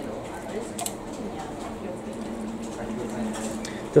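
Medium-sparkling mineral water being poured from a bottle into a plastic cup, a steady run of pouring and splashing.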